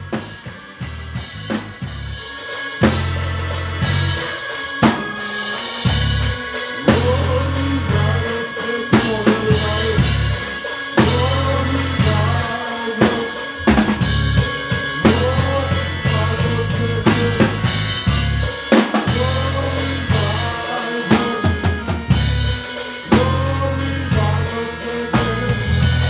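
A live band playing, heard from right beside the drum kit: drums and cymbals hit in a steady groove over deep electric bass guitar notes.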